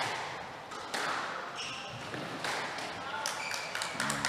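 A squash rally: a squash ball is struck by rackets and hits the court walls with several sharp cracks about a second apart. Short high squeaks come from the players' shoes on the wooden court floor.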